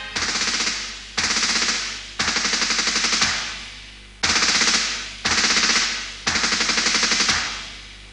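Automatic gunfire: six short bursts of rapid shots about a second apart, each trailing off in echo, with a longer pause about three seconds in.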